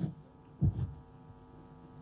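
A low thump on a handheld microphone about half a second in, after a short click, over a faint steady hum from the sound system.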